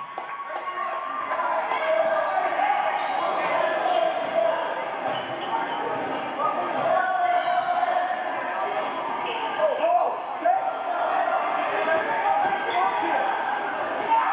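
Basketball game sound from an old videotape played back on a TV: a ball bouncing on a gym floor over a steady background of many voices from the crowd and players in the hall.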